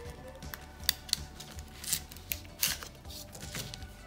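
Paper and card handling: a small card worked out of an envelope pocket on a heavy chipboard card, with scattered light rustles and clicks, over faint background music.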